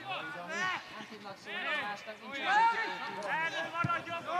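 Men's voices shouting and calling out at a distance, several short calls one after another.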